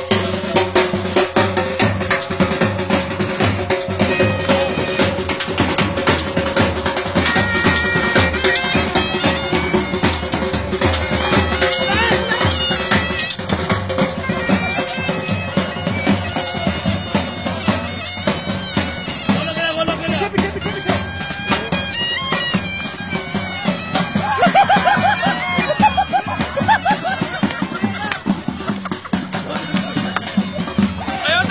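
A bagpipe and drum band playing, with a steady held drone under the tune through the first half and continuous drumming.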